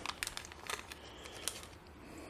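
Small clear plastic zip bag crinkling faintly in the fingers as a small silver button is worked out of it, with a few light separate crackles.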